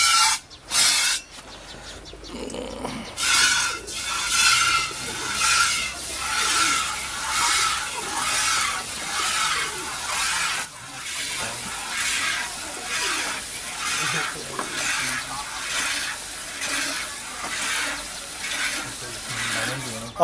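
Hand-milking of a water buffalo: jets of milk squirting into a steel pot in an even rhythm, a hissing squirt a little more than once a second. One sharp click stands out about ten seconds in.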